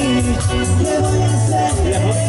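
A dance band's music, loud and continuous, with a steady bass line repeating under a melody.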